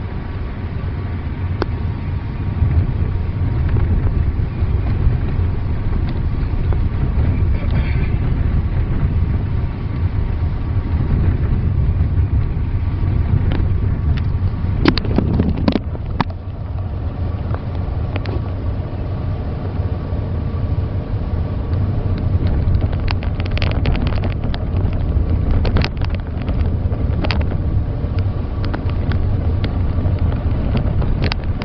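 Car driving on a snow-covered road, heard from inside the cabin: a steady low rumble of engine and tyres on snow, with scattered clicks and knocks, mostly in the second half.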